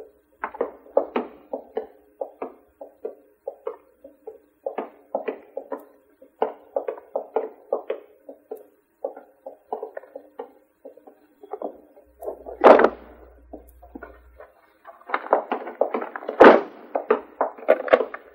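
Film score music: a run of short, quick notes over a low held tone, with two louder thuds, one about midway and one near the end.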